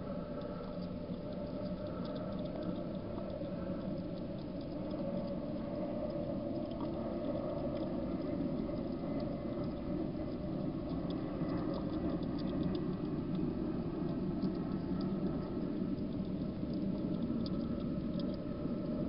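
Wild hedgehog eating from a dish of dry food: fast, continuous chewing and smacking with small crunching clicks, getting slightly louder over the first half.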